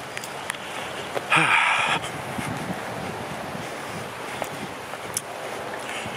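Steady hiss of wind and rain on the camera microphone, with a brief louder noisy burst about a second and a half in.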